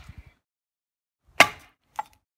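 Hatchet chopping into a piece of firewood to split kindling: one sharp, loud chop about a second and a half in and a lighter knock at the very end.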